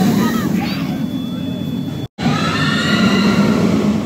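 Roller coaster ride heard from on board: a steady low rumble of wind and wheels, with riders laughing and whooping. The sound breaks off sharply about halfway, then the rumble returns under a long, high, held shout.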